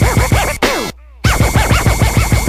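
Turntable scratching: a record pushed rapidly back and forth under the needle, giving quick rising-and-falling pitch sweeps several times a second. The sound cuts out suddenly for about a third of a second near the middle, then the scratching resumes.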